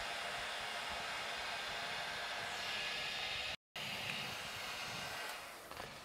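Electric stand mixer running steadily on low speed, its beaters churning a thick casein gesso. The sound cuts out for an instant about three and a half seconds in, then fades away near the end.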